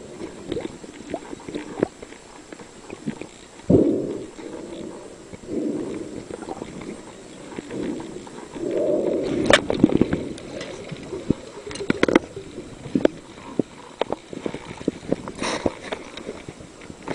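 Muffled underwater sounds of a spearfisherman struggling with a large speared fish: a series of bubbling gurgles, the strongest about four seconds in and again near ten seconds, with scattered sharp clicks and knocks throughout.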